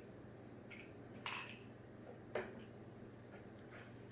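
Quiet room with a low steady hum, a short breathy sound as a sip of whisky is taken and swallowed, and a single light click of a glass tumbler set down on a table a little past the middle.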